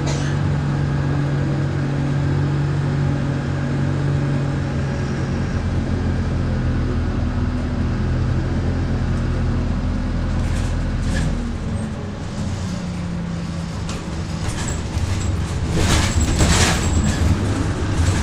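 Transbus Dart SLF single-deck bus heard from inside the saloon while under way: steady engine drone with road noise, easing off briefly past the middle. Near the end, a spell of knocks and rattles from the bus's body and fittings.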